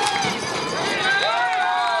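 Sideline spectators shouting and cheering during a scoring run, several voices yelling at once in long drawn-out calls that rise and fall.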